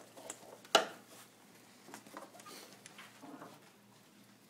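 A single sharp click about three-quarters of a second in, then faint rustling, handling noises and low murmuring in a small room.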